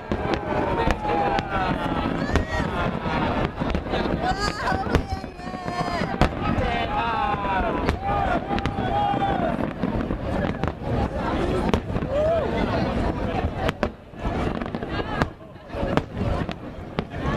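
Aerial fireworks bursting in quick succession, a dense run of sharp bangs and crackle, with a short lull near the end.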